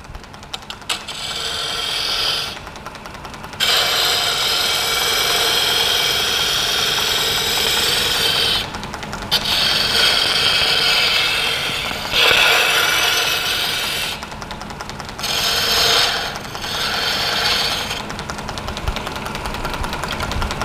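Wood lathe spinning a wooden workpiece while a hand-held turning tool cuts into it: a loud rasping scrape in several passes of a few seconds each, with short breaks as the tool is eased off. The lathe hums steadily underneath.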